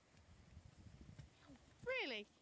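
Horse's hooves thudding on grass as it lands over a log fence and canters on. Just before the end, a short, loud cry breaks in, with a pitch that rises briefly and then falls.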